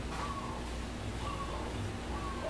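Animal calls: a short, slightly falling note repeated about once a second, over a steady low rumble.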